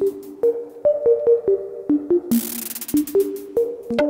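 Frap Tools Eurorack modular synthesizer playing a sequenced, polymetric line of short pitched notes with clicky attacks. About two and a half seconds in, a short envelope-shaped burst of blue noise comes in as a shaker-like percussion hit.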